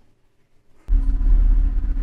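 About a second of near silence, then a loud, steady low rumble with a hum inside a stationary car.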